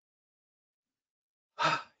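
Silence, then near the end a man's short, breathy sigh as he starts to speak again.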